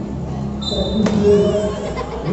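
A badminton racket strikes a shuttlecock once, a sharp crack about a second in, during a doubles rally, with voices around it.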